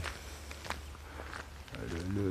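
Footsteps of a person walking on an asphalt lane, three evenly spaced steps about 0.7 s apart.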